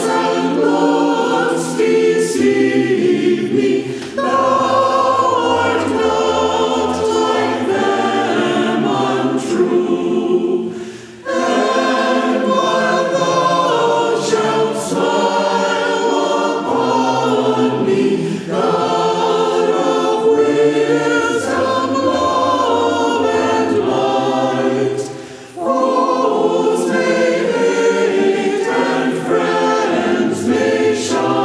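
Choir singing a hymn, line by line with brief pauses between the phrases.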